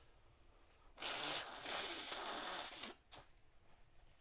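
A person blowing a runny nose into a tissue: one hard blow of about two seconds, starting about a second in.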